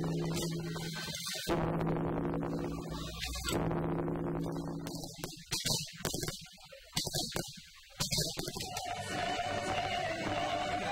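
A large bronze Korean temple bell struck with a swung wooden log. It rings with a deep steady hum and is struck again twice, each strike cut short. Then comes a run of sharp firework bangs with quiet gaps between them, and near the end a woman starts singing.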